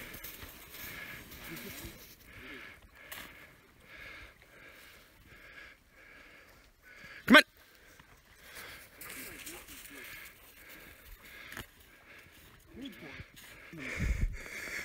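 A dog's single short, loud yelp about halfway through, over faint sounds of people moving about in the snow.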